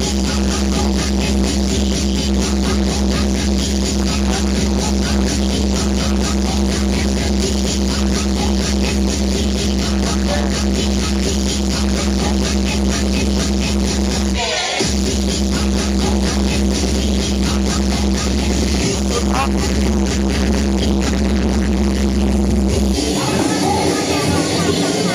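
UK happy hardcore DJ set played loud over a club sound system: a fast, dense beat over a steady heavy bass line. The bass drops out for a moment a little past halfway and again shortly before the end.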